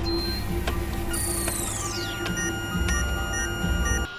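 Electronic film score: a low drone under thin high steady tones, with a whine falling in pitch about a second in and short electronic beeps after it.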